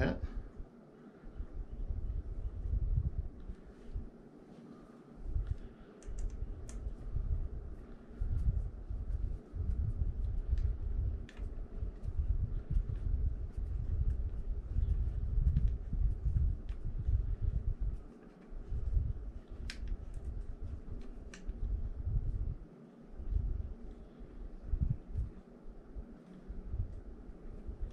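Hands fitting the plastic pedal parts of a kayak pedal drive back together around a bungee cord: uneven low handling bumps with scattered small, sharp clicks.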